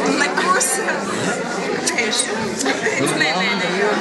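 Several people talking over one another around a table: overlapping group chatter in a room.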